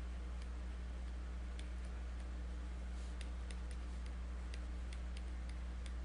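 Faint, irregular light ticks of a stylus tip touching a tablet surface during handwriting, about two or three a second, over a steady low electrical hum.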